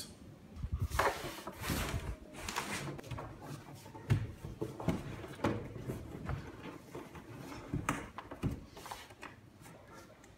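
Scattered, irregular light knocks and rubbing from a painted wooden upper bookshelf cabinet being handled and pushed against its base and the wall.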